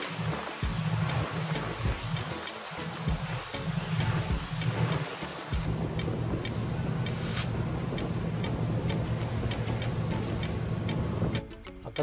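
Motor of a moving tour boat running at speed, a steady low hum under loud wind and rushing wake water. The rush cuts off suddenly near the end.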